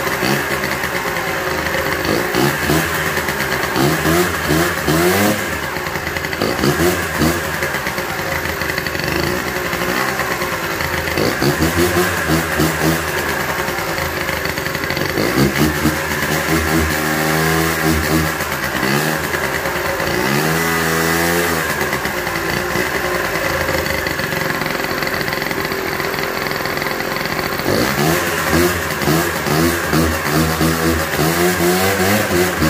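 Honda Dio 50cc two-stroke scooter engine running on a Stihl MS 180 chainsaw carburetor, revving up and falling back again and again, the longest rise about two-thirds of the way through. The carburetor works but still needs tuning.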